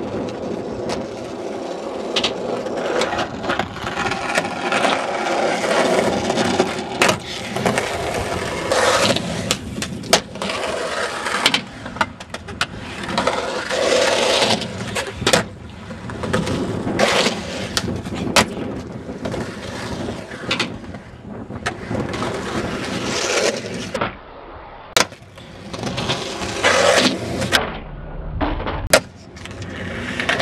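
Skateboard wheels rolling on asphalt and concrete ramps, with a steady rough grind broken many times by sharp cracks of tail pops and board landings.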